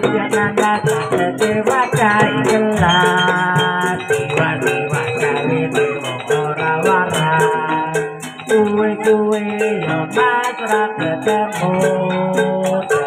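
Kuda lumping (jaranan) accompaniment music: a steady beat with an even, fast rattle about four times a second over a wavering melody line.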